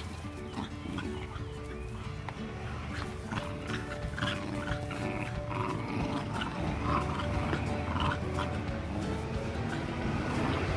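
A Staffordshire bull terrier and a Rottweiler puppy growling in play as they tug at a shoe, in short repeated bursts, over background music with sustained notes.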